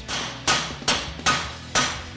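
Mallet striking a flat punch driven into the clamp slot of a steering knuckle, five even strikes about 0.4 s apart, each ringing briefly. The punch is wedging the knuckle's strut clevis open to free the strut.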